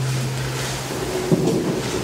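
Steady rushing room noise picked up by the hall's microphone, with no speech, and one faint tap about a second and a half in.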